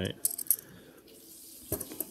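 Silver coins clinking against each other as a handful is handled and set down: two sharp metallic clinks about a quarter and half a second in, and another near the end.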